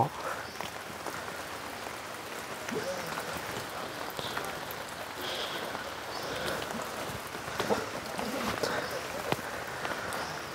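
Heavy rain falling steadily: an even patter with many sharp individual drop ticks.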